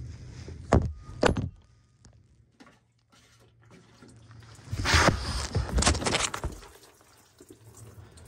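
Two sharp clicks from a ratchet and socket on the underbody fuel filter housing of a Cummins 6.7 L diesel pickup. After a pause comes a couple of seconds of clattering handling noise and liquid splashing as diesel fuel runs off the loosened housing.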